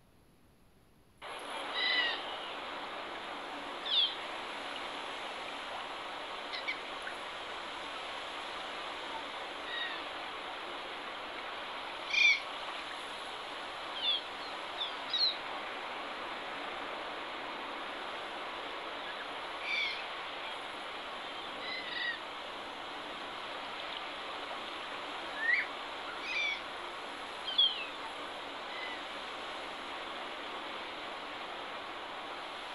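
Nature-ambience soundtrack of a phone benchmark's 3D forest scene: a steady rushing background, with short bird chirps and calls every few seconds. It starts suddenly about a second in.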